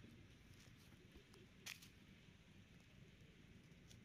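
Near silence: a faint low background rumble, with one brief soft click a little before halfway through and a couple of fainter ticks.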